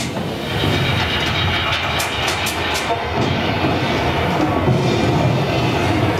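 Loud rumbling drone and noise from a live band's electronics, a dense steady wash with a deep low end, with a few sharp clicks about two seconds in.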